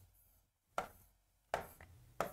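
A pen tapping on an interactive display screen while drawing lines: three short taps, one about a second in and two close together near the end.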